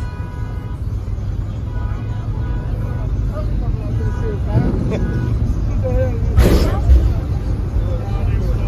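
Loud, steady bass from a car sound system playing music, with voices of people talking over it and a brief loud burst of noise about six and a half seconds in.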